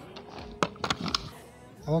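Quiet background music and faint talk, with a few sharp clicks or knocks around the middle.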